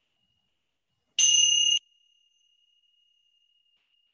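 A single bright, high, bell-like chime about a second in, lasting about half a second and cutting off abruptly, with only a faint trace of its ring after.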